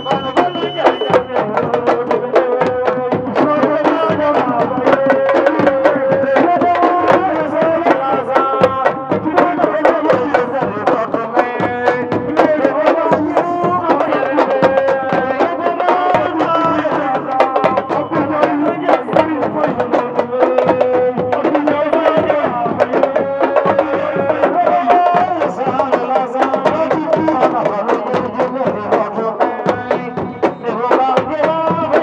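A large sabar drum ensemble playing together: many peg-tuned sabar drums struck with a stick and the bare hand in fast, dense interlocking rhythms. A voice sings held notes over the drumming.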